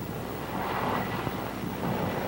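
Steady rushing noise of the CH-54 flying crane's gas turbine engines.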